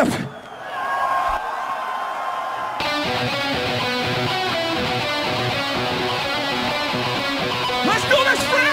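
Live heavy metal band opening a song: a single sustained note rings for about two seconds, then distorted electric guitars and the full band come in together about three seconds in and play on at a steady level.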